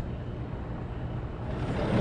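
Steady outdoor background noise, an even rumble and hiss with no distinct events.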